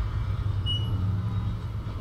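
Steady low rumble of an elevator-ride video's soundtrack, with a short high tone just under a second in.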